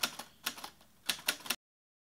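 Typing sound effect: a run of irregular, typewriter-style key clicks that stops about a second and a half in.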